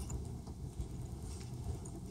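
Room tone during a pause in speech: a low steady hum with a few faint soft ticks.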